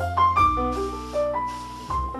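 Jazz piano trio playing live: a grand piano picks out a melody of single notes over a low double bass line, with a light cymbal wash from the drums in the middle of the stretch.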